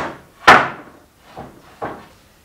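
Wooden board set down hard on a shelf: one loud knock about half a second in with a short ring-out, then two lighter knocks near the end as boards are shifted into place.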